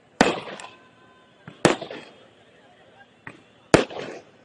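Firecrackers going off: three loud, sharp bangs about one and a half to two seconds apart, each with a short echo trailing off.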